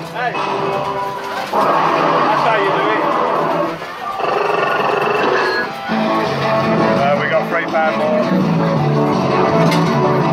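Fruit machine playing loud music with voice samples during its bonus feature, as the reels spin.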